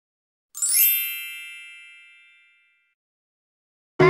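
A single bright chime sound effect, about half a second in, with a quick upward shimmer at its start, ringing and fading away over about two seconds.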